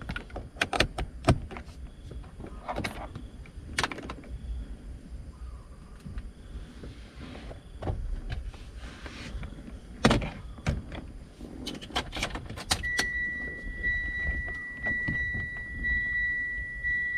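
Clicks, knocks and rustles of a USB cable being plugged into a console USB socket and a smartphone being handled. About three-quarters of the way through, a steady high-pitched electronic tone begins and carries on.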